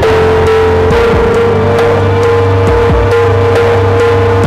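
Instrumental background music with a steady beat, held notes over a strong, steady bass line.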